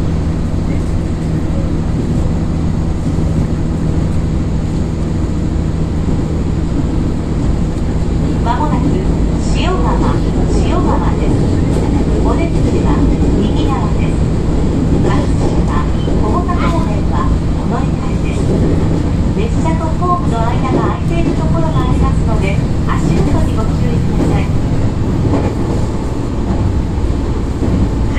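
Passenger train running at speed, heard from inside the carriage: a steady rumble of wheels on the rails with a constant low hum.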